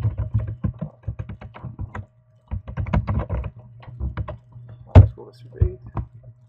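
Typing on a computer keyboard: quick runs of keystrokes, a pause of about half a second near the middle, and one heavier keystroke about five seconds in.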